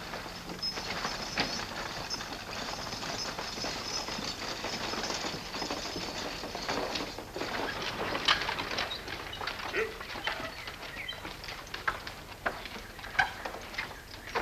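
Horse-drawn freight wagon arriving: hoofbeats and the rattle of its wooden wheels and harness, with a run of sharp clatters in the second half as it pulls up.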